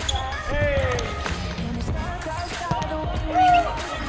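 A volleyball being struck by hand in a rally on an indoor court, a few sharp hits, over pop music with singing. A short loud high sound about three and a half seconds in.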